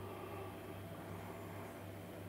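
Quiet room tone: a steady low hum under faint hiss, with no distinct sound events.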